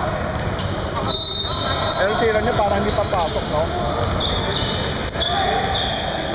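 A basketball bouncing on a hardwood gym floor during play, with players' voices and a few short, high sneaker squeaks.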